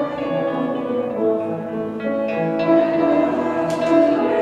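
Hymn music: the instrumental accompaniment of a congregational hymn, with held notes changing about every half second.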